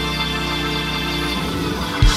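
Church praise band playing sustained organ chords, moving to a new chord about one and a half seconds in.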